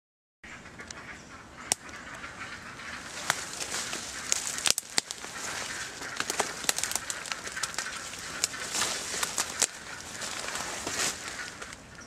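Leaves, twigs and branches rustling and crackling as someone pushes through brush, with many sharp snaps and clicks throughout; it starts suddenly about half a second in.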